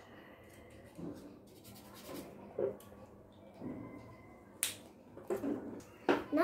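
Faint rubbing and tapping of a felt-tip marker and hands on a foam craft stamp, with one sharp click a little past the middle.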